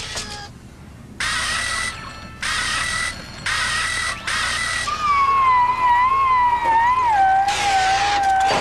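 Cartoon electronic sound effects for a service droid breaking down: four short buzzing zaps about a second apart, then a wavering whine that sinks slowly in pitch.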